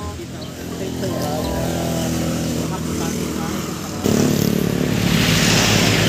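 Road traffic passing close by: a vehicle engine runs steadily, then it gets suddenly louder about four seconds in as a vehicle goes past.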